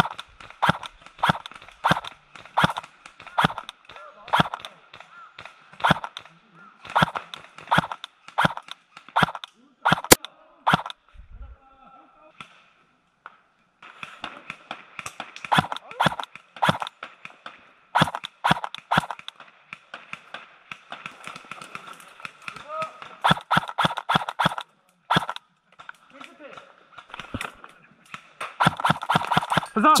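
Airsoft electric rifle, a DBOY KAC PDW, firing single shots in steady succession, about two a second, with a gap of a few seconds about eleven seconds in before the shooting resumes.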